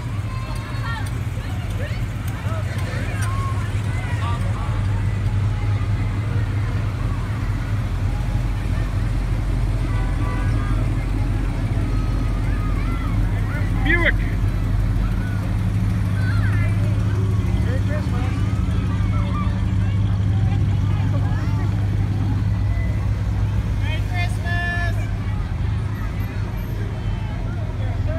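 Car engines running at low speed as parade cars drive slowly past, a steady low rumble that swells through the middle as they go by, with the chatter of onlookers over it.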